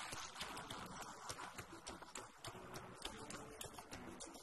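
Faint, irregular clicking, several clicks a second, over a steady hiss.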